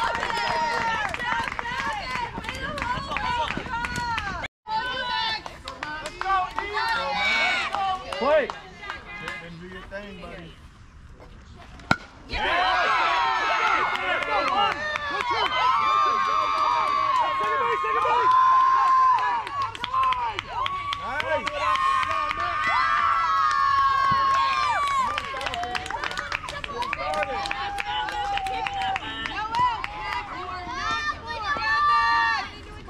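Crowd at a youth baseball game: many overlapping voices of children and adults shouting and chanting from the sidelines, with long held shouts in the second half. A quieter lull about a third of the way in ends with a single sharp crack.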